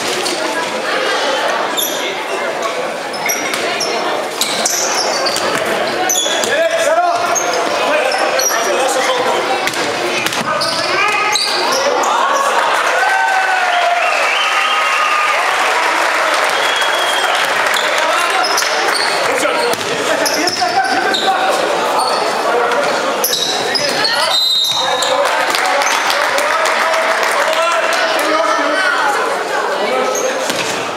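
Basketball game sound in a large sports hall: a ball dribbling and bouncing on the hardwood court amid players' and spectators' shouting, with the hall's echo.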